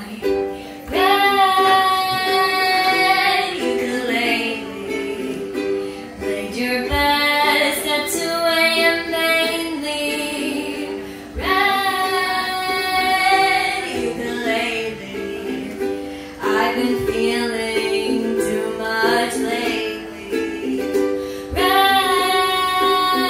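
A voice singing several long, held notes over a strummed ukulele.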